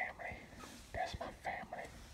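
Quiet speech, close to a whisper, in two short phrases: one at the start and one about a second in.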